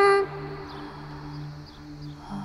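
A woman's singing voice ends a held note just after the start, then a soft, steady low drone of background music carries on.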